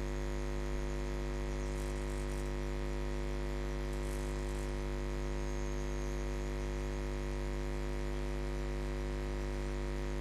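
Steady electrical mains hum with a buzz of many evenly spaced overtones, unchanging throughout.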